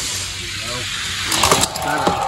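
Die-cast Hot Wheels cars rolling fast down plastic track lanes with a steady hiss, then a quick clatter of clicks about one and a half seconds in as they cross the electronic finish-line gate. The gate then gives a steady electronic tone marking the winning lane.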